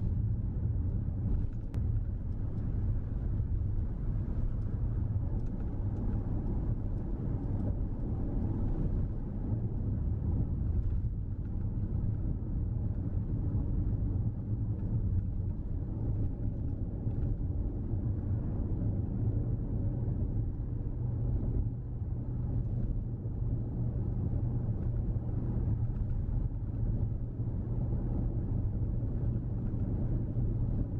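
Steady low rumble of a car driving along a road, its engine and tyre noise heard from inside the cabin.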